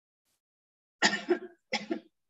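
A woman coughing: a short run of sharp coughs about a second in, after a moment of silence.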